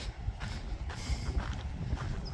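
Wind buffeting the microphone outdoors, a steady low rumble.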